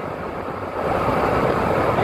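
Steady road and engine noise of a car driving, heard from inside the cabin, easing slightly in the first second.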